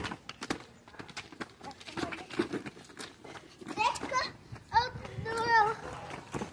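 Sharp knocks of a football being kicked and shoes scuffing on a gritty driveway, then a small boy's high-pitched crying wail about four seconds in, rising again and held for more than a second near the end.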